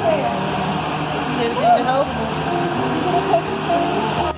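Several people talking and calling out at once, close by, over a steady low engine hum.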